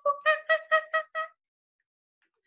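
A woman imitating a monkey: a quick run of short, high "ooh" hoots, about five a second, stopping a little past a second in.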